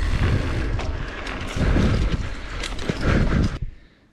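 Wind rushing and buffeting over the microphone on a moving bicycle, a dense low rumble with scattered knocks from the ride. It cuts off suddenly near the end.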